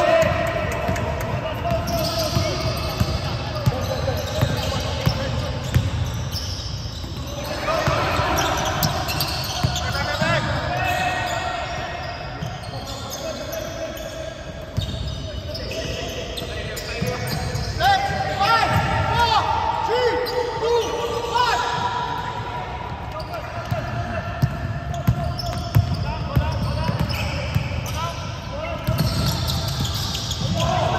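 Live indoor basketball play: a basketball bouncing on a hardwood court, with sneakers squeaking and players calling out, echoing in a large gym hall.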